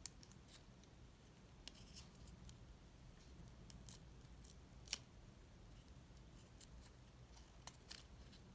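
Faint, scattered clicks and crinkles of fingers and nails handling a coiled charging cable and peeling its paper tie band, the sharpest click about five seconds in.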